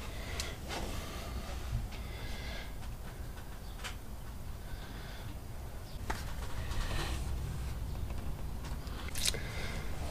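Soft handling sounds over a low steady hum: a few light clicks and rustles as a flashlight is picked up, switched on and held over the boat's battery compartment.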